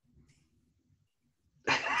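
Near silence with a faint low hum, then a man's loud laughter breaks in near the end.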